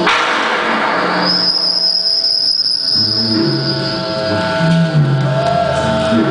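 Loud live electronic music: a burst of noise at the start, then a single steady high tone held for about four seconds, with a stepping bass line coming in about halfway through.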